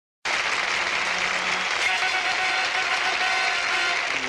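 Audience applause, starting abruptly a quarter of a second in and holding steady, with faint held musical notes beneath it.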